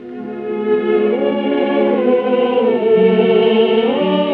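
Orchestra and chorus holding sustained chords, swelling up from quiet over the first second, heard through the narrow, muffled sound of an old 1948 radio broadcast recording.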